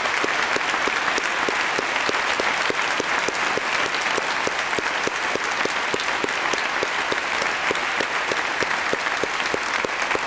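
Audience applauding steadily, many hands clapping without a break.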